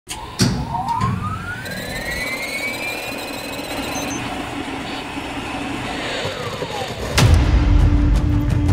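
Cinematic sound design: a sharp hit, then an electronic whine that rises over a few seconds, holds, and slides back down. It ends in a deep boom as heavy, dark score music comes in.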